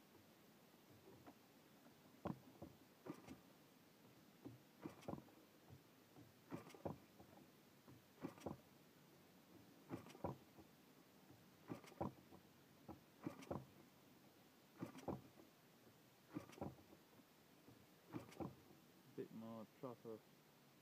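Saito FA-72 four-stroke model aircraft engine, converted to spark ignition, being flipped over by hand at the propeller. Each flip is a short faint knock, about one every one and a half to two seconds. The engine never fires: it is too cold to start this way.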